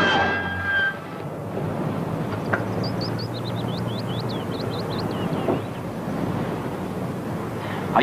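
A dramatic brass music cue cuts off about a second in, then a car engine runs steadily under a noisy hiss. Midway comes a run of short high chirps.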